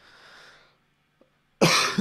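Faint breathing into a close microphone, then near the end a man's short, stifled laugh.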